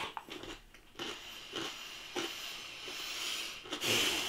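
Chewing a mouthful of crispy pizza crust: soft, faint crunches roughly every two-thirds of a second.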